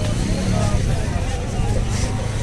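Busy street market ambience: a steady low rumble with indistinct background voices.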